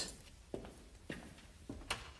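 Faint footsteps: a few soft steps about half a second apart.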